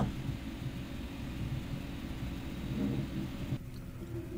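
Steady background rumble and hiss of room and microphone noise with no one speaking. The hiss cuts off sharply about three and a half seconds in, leaving only the low rumble.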